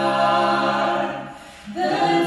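Mixed men's and women's a cappella vocal ensemble singing through microphones, holding a sustained chord in close harmony. The chord fades away a little past a second in, and the voices come back in with a new chord just before the end.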